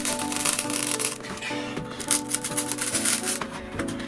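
Plywood crackling with a rapid run of small cracks and clicks as a side panel is folded up along a V-groove milled to leave only about 1 mm of the sheet, the thin remaining layer cracking as it bends. Background music plays underneath.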